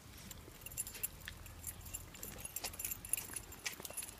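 Light metallic jingling and clicking from the collar tags and leash clips of leashed Maltese dogs as they walk, picking up after about a second.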